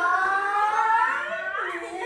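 A person's voice holding one long drawn-out note that rises slowly in pitch, then bends and drops near the end.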